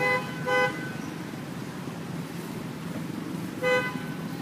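A vehicle horn gives short, flat-pitched toots: two in quick succession in the first second and another near the end. Under them runs a steady low background noise.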